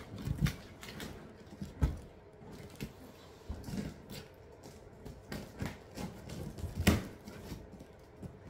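Scattered knocks and thumps of a large shipping box being moved and handled, the sharpest about two seconds in and about a second before the end.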